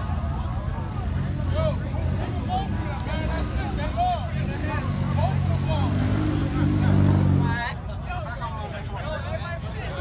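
Car engine running at a steady pitch, growing louder over a few seconds, then cut off suddenly about three-quarters of the way in; crowd chatter throughout.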